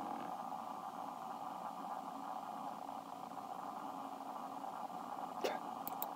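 Steady background hum with no music playing. Two brief clicks near the end.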